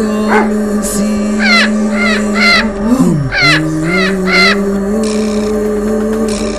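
Background film music: a sustained low synth drone that steps in pitch, with swooping downward glides. Over it come two groups of three short bird-like calls, each sliding down in pitch.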